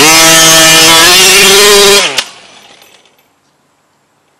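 Two-stroke gas engine of a Losi 5ive-T 1/5-scale RC truck running at high revs, rising briefly in pitch and then holding. It cuts out abruptly about two seconds in, with a sharp click and a short fading noise after it. The engine stops for good: the owner finds it blown.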